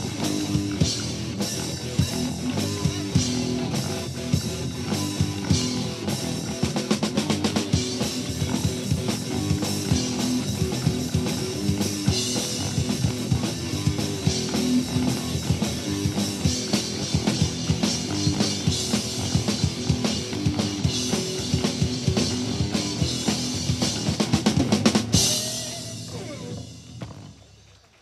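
Live rock band playing an instrumental passage with no vocals: drum kit with a steady beat, electric guitar and bass guitar. Near the end the band stops on a loud final hit that rings out and fades away.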